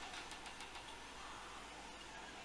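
Faint steady hiss of room tone, with no distinct sounds.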